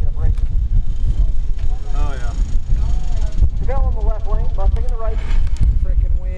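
Wind buffeting the microphone, a steady, gusty low rumble, with people talking indistinctly over it.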